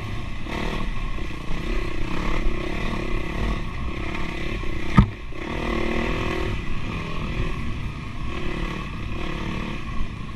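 Dirt bike engine running under way, its pitch rising and falling with the throttle. A single sharp knock stands out about halfway through.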